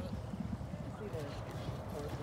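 Hoofbeats of a racehorse walking on the dirt track, a steady run of dull, irregular thuds.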